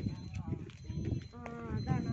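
People's voices in conversation, with one high-pitched voice calling out briefly near the middle, over a low rumble.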